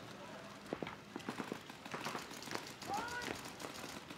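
Faint paintball marker fire: a quick run of sharp pops, several a second, starting about a second in and stopping shortly before the end. A faint distant voice calls out near the end.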